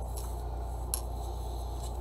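Steady low background hum with light handling of paper card stock on a craft mat, marked by one short sharp click about halfway through.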